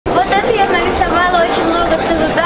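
Indistinct voices of people talking, with no words that can be made out.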